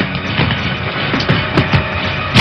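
Action-film background music with drums and percussion, with a few short knocks over it.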